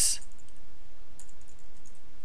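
Computer keyboard typing: a quick run of light key clicks, mostly in the second half.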